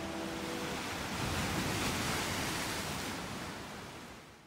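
Ocean surf washing over rocks, a steady rush that builds about two seconds in and then fades away near the end.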